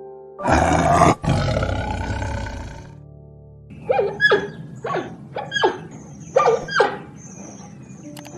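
A tiger roars once, loud and lasting about two and a half seconds. A couple of seconds later comes a run of six short, high calls, each falling sharply in pitch, from a giant panda. Soft background music runs underneath.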